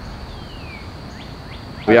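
Steady outdoor background noise with a faint falling chirp early on and a few short faint chirps, like birds, before a man's voice begins near the end.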